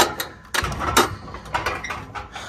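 Metal latch and boards of a wooden fence gate clicking and knocking as the gate is unlatched and pulled open: a run of sharp clicks, loudest at the start and about a second in, with a quick cluster of smaller clicks near the end.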